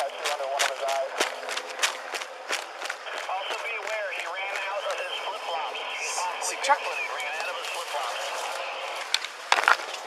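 Footsteps and rustling, crackling brush as a K9 handler and his tracking dog push through dense undergrowth, with frequent small snaps and clicks that get louder and sharper near the end.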